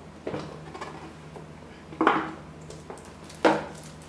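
Cardboard phone box being handled and unpacked on a table: a few light taps and knocks, with two sharper knocks about two seconds in and near the end.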